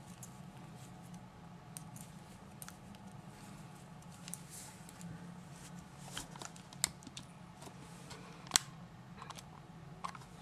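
Faint clicking and rustling of metal knitting needles and yarn being handled, with two sharper clicks in the second half, over a low steady hum.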